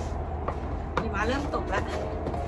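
Boots crunching through snow in footsteps about two a second, with a short wavering vocal sound about a second in.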